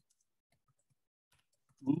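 Near silence with a few faint computer-mouse clicks, then a man's voice starts just before the end.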